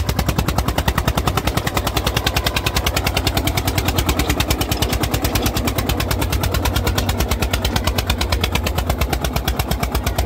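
Eicher 241 tractor's single-cylinder air-cooled diesel engine running hard under load while pulling a disc harrow through soft soil, its exhaust giving rapid, even, loud beats.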